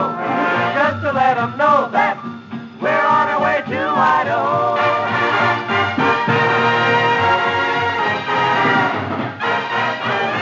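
A 1940s swing dance orchestra, transferred from a 78 rpm shellac record, playing an instrumental passage: sliding, bending notes for the first few seconds, then held chords.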